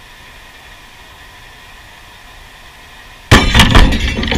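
CRT television picture tube imploding: a sudden loud bang a little over three seconds in, followed at once by glass shattering and debris clattering as it dies away.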